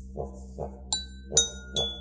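A didgeridoo drone pulsing in a steady rhythm, about twice a second. About a second in it is joined by three strikes on drinking glasses tuned with different amounts of water, each ringing at its own pitch.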